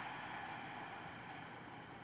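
Faint breathy hiss of a long, slow exhale, fading away gradually.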